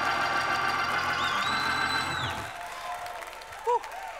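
Sustained keyboard chords with a steady bass note, stopping about two and a half seconds in, under a congregation clapping and calling out to one another. A short voice sounds near the end.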